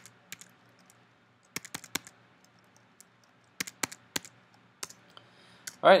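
Keystrokes on a computer keyboard, a paste shortcut and then a few short clusters of key taps with quiet gaps between them.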